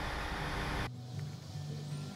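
Background music with a steady bass line, over a dense machinery noise from a ship's engine room that cuts off suddenly about a second in.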